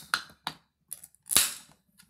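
Aluminium can of carbonated vodka–ginger beer cocktail being opened: a few light clicks at the pull tab, then one sharp pop with a short hiss of escaping gas about one and a half seconds in.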